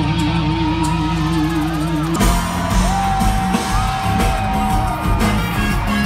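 Live band music played loudly through a hall's PA: a sustained guitar note with a wavering vibrato, then an abrupt change about two seconds in to a long held vocal note with yells and whoops from the crowd.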